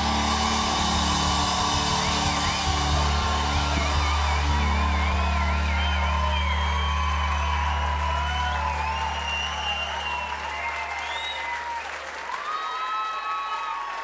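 A rock band's final chord held and ringing out, fading away about twelve seconds in, while a concert crowd cheers and applauds.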